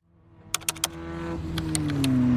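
A low humming drone fades in from silence and grows louder, its pitch sinking slightly, with a few sharp clicks about half a second in. It is the opening of an edited transition sound under the title card.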